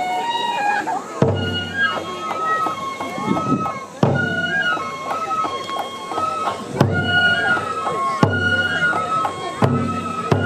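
Live kenbai dance music: a bamboo flute playing a high, held melody over heavy, widely spaced beats of waist-worn taiko drums struck with sticks.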